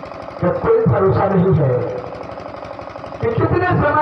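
A man's voice, amplified through a stage microphone and loudspeakers, declaiming dialogue in two phrases: one about half a second in and one near the end, with a quieter gap between.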